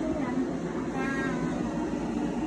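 A toddler's short, high-pitched whining call about a second in, over a steady low background hum.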